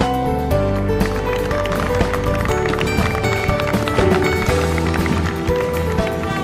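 Band music with sustained brass chords that change every half second or so, over a steady beat.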